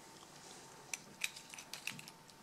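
Faint, light metallic clicks and taps, about six in the second half, as a metal follower rod is fitted against a euro-profile lock cylinder.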